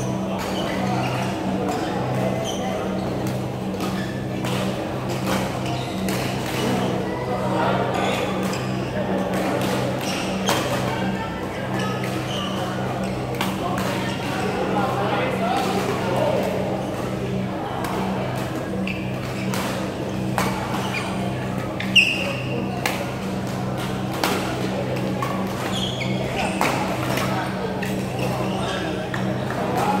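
Badminton hall ambience: rackets striking shuttlecocks on several courts as sharp clicks, the loudest about 22 seconds in, with indistinct voices and a steady low hum underneath.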